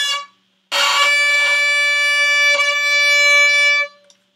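Violin bowed with heavy pressure near the fingerboard: a short note that stops just after the start, then, after a brief gap, one long held note whose attack is scratchy and harsh before it settles into a steady, clear tone. Near the fingerboard the string is soft and does not take heavy bow weight well, so the start sounds terrible.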